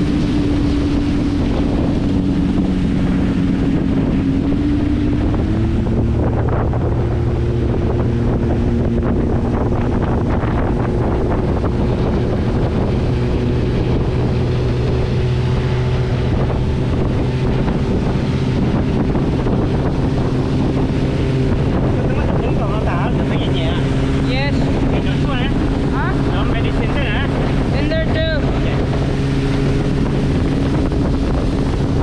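Motorboat engine running under way, with water rushing along the hull and wind buffeting the microphone. The engine note shifts about five seconds in, then holds steady.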